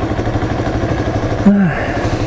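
Motorcycle engine idling steadily at a standstill, its beat even and unchanging, the engine heating up while stopped. A brief falling voice sound about one and a half seconds in.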